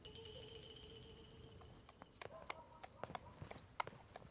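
A horse's hooves clip-clopping faintly and unevenly on hard ground, starting about halfway in.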